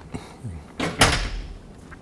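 A single loud knock or thump about a second in, with a deep thud under it and a short fading tail, after a few lighter knocks.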